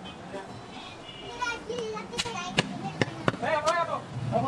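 Four sharp knocks in the second half, a butcher's cleaver striking a wooden chopping block, with voices talking in the background.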